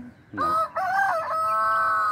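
A rooster crowing once: a short rising start, a wavering middle and a long held final note, beginning about a third of a second in.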